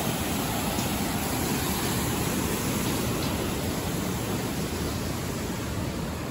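Steady rushing of a mountain stream cascading down a rocky waterfall.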